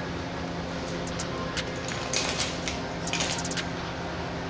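Small keychain circuit boards clicking and clinking onto a glass counter, with a plastic bag crinkling, in a few short bursts of clicks over a steady low hum.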